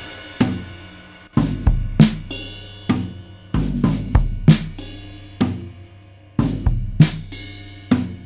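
Recorded acoustic drum kit playing back through a glue compressor on the drum bus: kick, snare, toms and cymbals in a slow, heavy pattern of hits, each leaving a ringing low drum tone.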